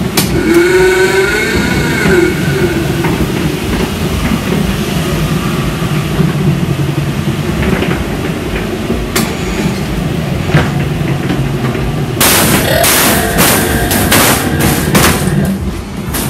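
Small fairground train ride running along its track, a steady low rumble, with a wavering pitched tone in the first couple of seconds. From about twelve seconds in comes a run of sharp clattering knocks.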